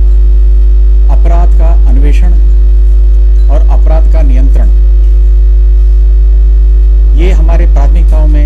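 Loud, steady electrical mains hum at about 50 Hz with a ladder of overtones, running throughout. Under it, a man's speech comes through faintly in three short stretches.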